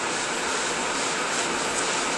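A steady, even rushing hiss that holds at one level, with no pitch or rhythm to it.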